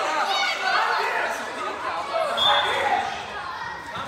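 Several people calling out and talking over one another in a large hall, the voices overlapping and getting quieter toward the end.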